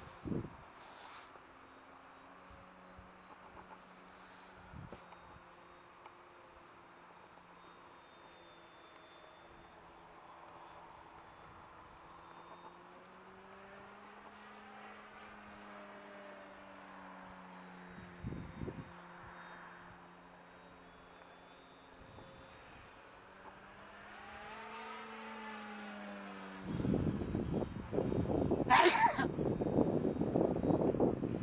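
Radio-controlled model airplane flying overhead: its motor is a steady, distant hum whose pitch rises and falls gently as it passes. A louder rushing noise takes over near the end.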